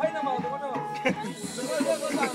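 Kemane, a bowed folk fiddle, playing a quick, ornamented dance tune with a held note in the first half, over a drum beating time. A hissing rush of noise joins about halfway through.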